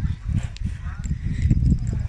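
Wind buffeting the phone's microphone: an irregular low rumble that rises and falls.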